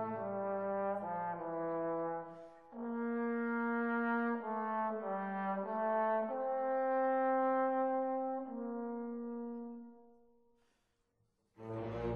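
Classical brass music: slow phrases of long held notes in harmony, fading away about ten seconds in. After a moment of near silence a new piece starts near the end.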